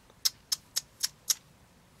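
Pair of scissors snipping: five short, sharp clicks of the blades closing, about four a second.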